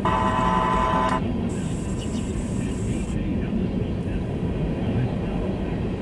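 Empty covered hopper cars of a freight train rolling past on the rails, a steady rumble of wheels and cars. A brief high-pitched tone sounds over it for about the first second.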